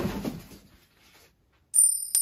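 An edited-in sound effect: high, steady ringing tones with a few sharp clicks, starting abruptly about three quarters of the way in after a second of dead silence.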